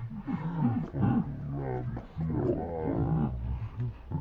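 Macaque vocalising in a run of loud, wavering cries, several calls in a row with short breaks between them.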